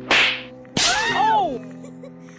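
A quick sharp whoosh, then a short loud burst of several voices shouting together for under a second, their pitch rising and falling, over soft background music.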